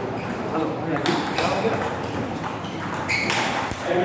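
Table tennis rally: the ball clicking off the bats and the table in quick sharp hits, over voices in the hall.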